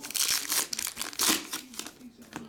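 Plastic wrapper of a 2024 Topps Heritage baseball card pack being torn open and crinkled by hand. It comes in two main bursts of rustling, the second about a second in.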